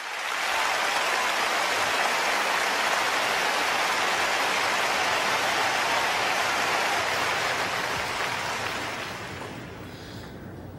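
Large arena audience applauding. It swells up at once, holds steady, then dies away over the last two seconds.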